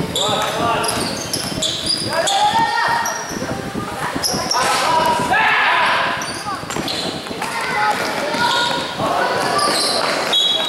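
A basketball being dribbled and players moving on an indoor court, with many short high sneaker squeaks. Players and onlookers call out throughout, all echoing in a large covered gym.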